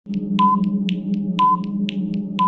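Quiz countdown-timer sound effect: quick ticks, about four a second, with a short beep once each second over a steady low electronic drone.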